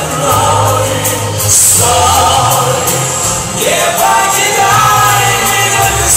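Loud amplified live ballad music with sustained choir-like voices over a steady bass line, a rising glide in the melody about three and a half seconds in.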